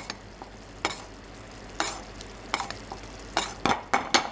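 Blue cheese cream sauce simmering in a nonstick frying pan with a steady soft hiss, while a spoon stirs and scrapes through it to baste hamburg steaks, with short scrapes against the pan about once a second. The sauce is being reduced.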